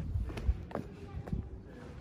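Boots landing on stone paving as she hops through a hopscotch grid: several short, irregularly spaced knocks and scuffs.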